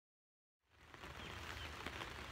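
Silence, then about half a second in, faint outdoor ambience fades in: the even hiss of light rain with a few faint drop ticks over a low rumble.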